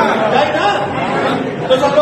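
Speech: a man talking into a microphone in a large hall, with the chatter of a gathered crowd under it.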